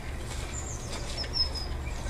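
A small bird chirping a few times in short, high, gliding notes over a steady low background rumble.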